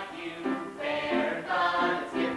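Several voices singing a song together with musical accompaniment, a number from a stage musical.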